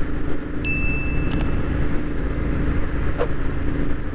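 Royal Enfield Interceptor 650's parallel-twin engine running steadily at cruising speed through aftermarket exhausts, with road and wind noise. About half a second in, a short high electronic chime from the subscribe-button overlay rings for about a second.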